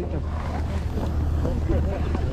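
Background chatter of several people talking, with wind buffeting the microphone and a steady low rumble underneath.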